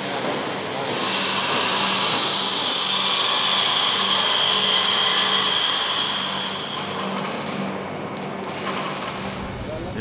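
Metal workshop noise: a power tool runs steadily with a high whine from about a second in until about seven seconds, then eases off over a low steady hum.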